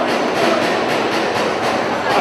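Steady rumble and rattle of a weighted weight-pull cart rolling on its steel rails as a pit bull hauls it.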